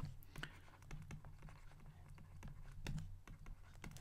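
Faint quick clicks and light scratches of a stylus writing on a pen tablet, over a low steady hum.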